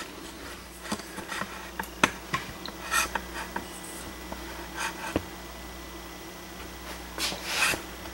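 Scattered light clicks, knocks and rubs of handling noise, about one a second with a short rustle near the end, over a steady low hum in a small workshop.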